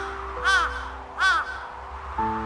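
A crow cawing twice, each caw short and arched in pitch, about three-quarters of a second apart, over background music with long held notes.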